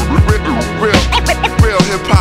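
Hip-hop instrumental beat made on an MPC: a low bass line and punchy drums under short pitched sample lines that slide up and down.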